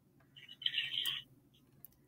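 A brief, faint, muffled voice over a phone line about half a second in, lasting under a second, with a couple of faint ticks around it.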